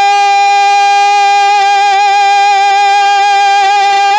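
A man's voice holding one long, steady sung note of a naat into a microphone, with a slight waver, before the melody moves on again.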